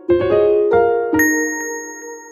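Short closing jingle of bright, bell-like struck notes in a quick run, ending about a second in on a ringing final note that slowly fades.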